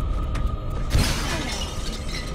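A sudden loud crash of shattering debris about a second in, crackling out for most of a second, over a dark orchestral film score.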